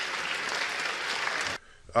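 Audience applauding, cutting off suddenly about one and a half seconds in.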